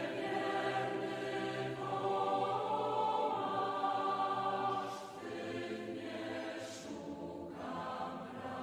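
Voices singing a church hymn in long held phrases, with a short break about five seconds in and a new phrase starting near the end.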